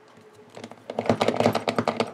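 A pen drawing small circles through punched holes onto card: a fast run of scratchy clicks that starts about half a second in.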